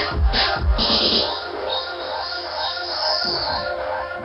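Electronic dance music played live: heavy bass and kick-drum hits for about the first second, then the low end drops out, leaving higher synth sounds over a held tone.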